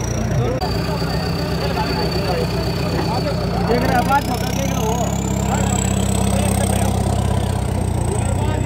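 Farmtrac 6055 tractor's diesel engine running steadily at low revs, under the chatter of a crowd of men.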